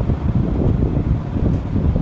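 Loud, uneven low rumble of moving air buffeting the microphone.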